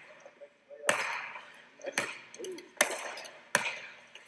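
Basketball dribbled on an indoor court floor: four bounces roughly a second apart, each echoing in the gym.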